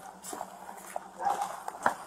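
Footsteps and light clicks and rattles of duty gear as deputies walk slowly, with a sharper click near the end and a faint low hum underneath.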